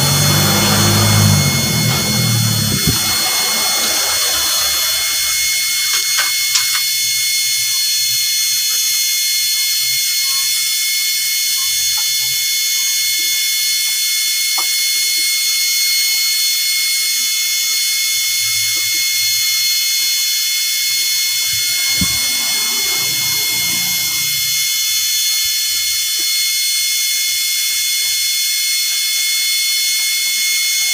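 A steady high-pitched electronic whine made of several fixed tones, unchanging in pitch. Handling clatter and a low rumble sound in the first few seconds, with a few faint clicks later.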